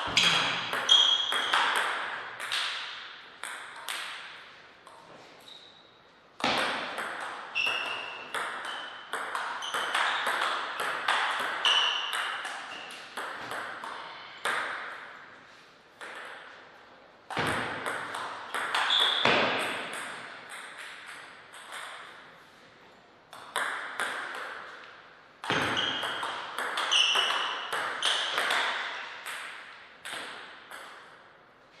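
Table tennis ball struck back and forth by paddles and bouncing on the table in four rallies of several seconds each, with short pauses between points. Each hit is a sharp click with a brief high ring.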